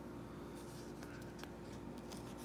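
Faint rustling and light scratching of a paper picture book being handled, with a few soft ticks, over a low steady hum.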